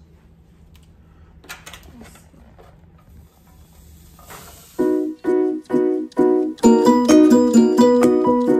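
Faint rustling and handling of a plastic-wrapped foam meat tray as raw ground beef is tipped into a pan, then background music with plucked notes comes in about five seconds in: short separate chords at first, then a busier, continuous run.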